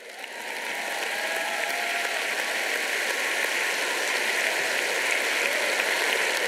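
Large audience applauding, the clapping swelling over the first second and then holding steady.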